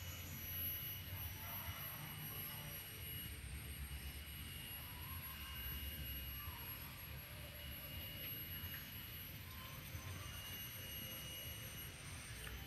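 Faint outdoor background: a low steady rumble with thin, steady high-pitched tones over it and a few faint short chirps.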